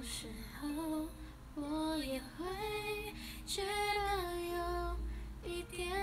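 A woman singing a slow melody in several phrases of long held notes.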